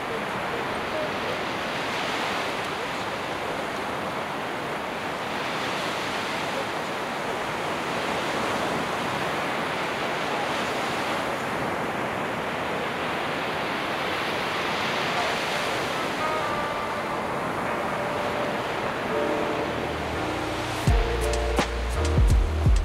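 Sea surf breaking on a sandy beach: a steady rush of waves that swells and eases every few seconds. Music fades in during the second half and comes in loudly with a heavy beat about a second before the end.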